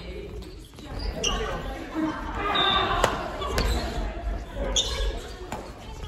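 Badminton rally on a wooden gym court, echoing in the hall: sharp racket strikes on the shuttlecock, two of them about half a second apart near the middle, with shoes squeaking on the floor and players' voices.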